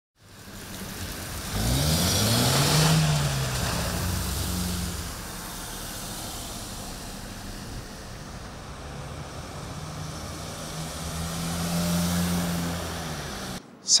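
Cars passing on a wet, icy city street. About two seconds in, a car's engine rises in pitch as it accelerates past with tyre hiss. A second vehicle's steady engine swells louder near the end.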